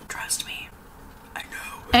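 A woman's voice, soft and near a whisper, followed by a quieter pause; full-voiced speech starts at the very end.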